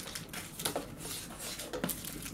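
Faint handling noise of sweet packets and items being moved about: a few light, short knocks and rustles.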